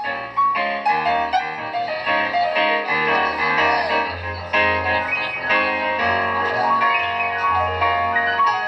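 Instrumental passage from a live band: grand piano playing a run of notes over an upright double bass.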